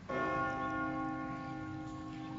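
A church bell struck once, then ringing on and slowly fading.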